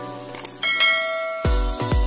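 A bright bell chime, a notification-bell sound effect, rings out about half a second in just after a short click. Electronic dance music with heavy bass beats then starts about one and a half seconds in.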